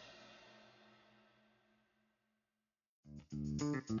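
Background music fades out, leaving a second or so of silence. A new guitar-led track with bass then starts about three seconds in, with sharp rhythmic notes.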